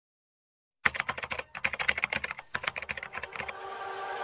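Computer keyboard typing: a quick run of keystroke clicks with one short pause, as a web address is typed in. Near the end the clicks stop and a steady sound begins to swell up.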